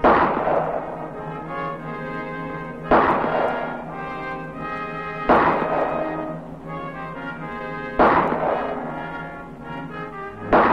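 Pistol shots in slow, deliberate fire, four single shots about two and a half to three seconds apart, each dying away in a long echo. A brass film score plays underneath.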